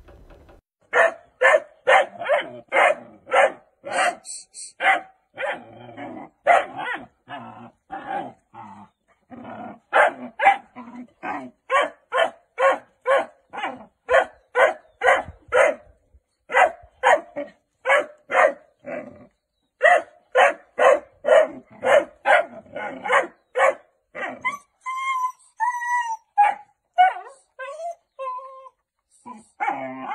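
A dog barking over and over, about two or three barks a second with short breaks. Near the end the barking gives way to a few drawn-out calls that slide up and down in pitch.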